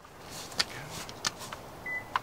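A few light plastic clicks and knocks as a plastic panel at the base of the windshield, beneath the cowl, is handled and worked loose by hand.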